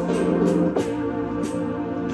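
Roland E-09 arranger keyboard played with both hands: held chords that move to a new chord about three-quarters of a second in.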